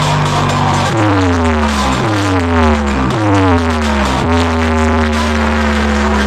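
Loud electronic DJ music played through a stack of horn loudspeakers, with four falling pitch sweeps about a second apart through the middle over a heavy bass, settling into a steady held note.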